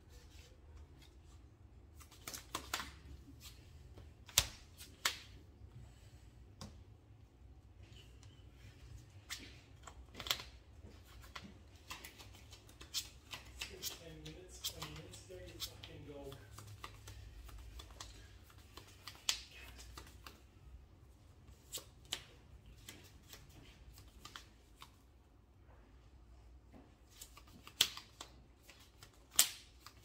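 Sleeved trading cards being handled on a tabletop playmat: scattered light taps and clicks as cards are placed, picked up and shuffled.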